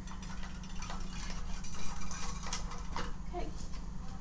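Scattered small clicks and clacks of metal and plastic as a stubborn CPU heatsink is worked loose from inside a desktop computer case, over a steady low hum.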